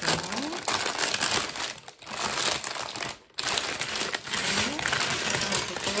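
Thin plastic polybag crinkling as hands tear it open and handle it, with loose plastic Lego bricks rattling inside. Two brief pauses come about two and three seconds in.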